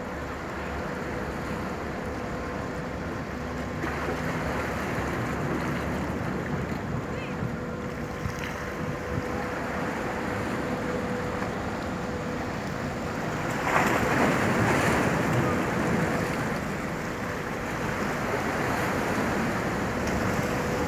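Speedrunner III fast ferry passing close by as it comes in: a steady engine hum under the rush of churning water. A louder rushing surge starts suddenly about fourteen seconds in and eases off over the next few seconds.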